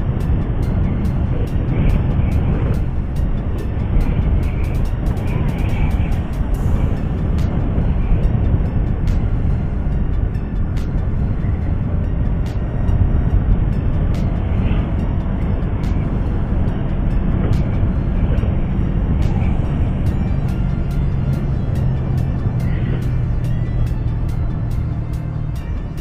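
Wind rushing over the microphone and a motorcycle engine running at road speed, with a steady low hum in the second half, under background music with a steady beat.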